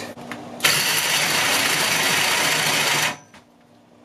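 Cordless drill driving a 1½-inch Milwaukee Hole Dozer hole saw into thick metal pipe. A loud, harsh cutting noise starts about half a second in and stops abruptly about two and a half seconds later.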